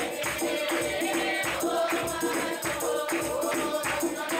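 Congregation singing a hymn together, with a tambourine shaken and struck in a steady beat of about two to three strokes a second.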